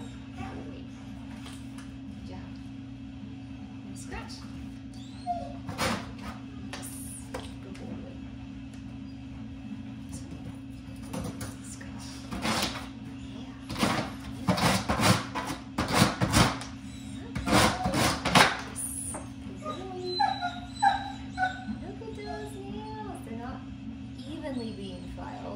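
A dog scratching the sandpaper pad of a nail scratch board with its front paw: a quick run of rasping strokes in the middle, followed by soft high whining near the end. A steady low hum runs underneath.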